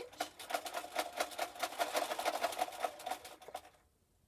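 Electric sewing machine stitching at a quick, steady rate, with rapid even needle strokes over a steady motor tone, stopping abruptly shortly before the end.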